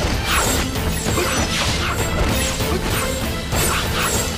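Staged martial-arts fight sound effects: a quick run of swishes and hits, several each second, over continuous dramatic background music.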